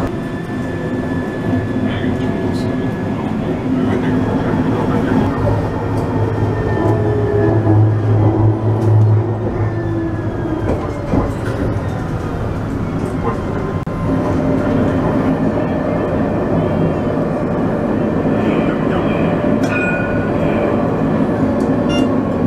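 Tram running on its rails, heard from on board: a steady rumble of wheels on track with a motor whine whose pitch slides as the tram changes speed.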